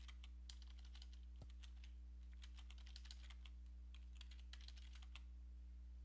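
Faint typing on a computer keyboard: irregular keystrokes entering a terminal command, with a steady low electrical hum underneath.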